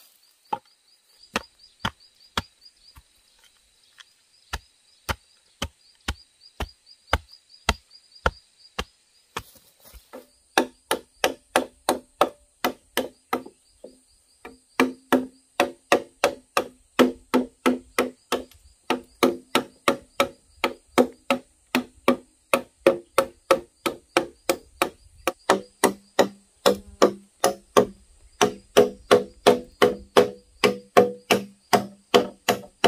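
Machete chopping hollow bamboo poles: sharp, even strokes about three a second, each with a hollow ringing tone from the culm. For the first ten seconds there are slower sharp knocks, about one and a half a second, over a steady high insect buzz.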